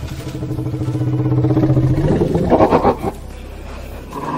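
Film soundtrack: a low, steady droning sound that grows louder, then a louder, harsher burst about two and a half seconds in, before it drops back.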